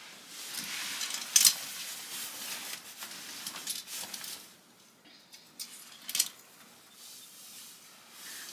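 Hanger hooks clicking and scraping on a metal clothing rail as a quilted jacket is hung up, with the fabric rustling. A sharp click about a second and a half in is the loudest sound. It is followed by quieter rustling and a few light clicks as an empty plastic hanger is pulled off the rack.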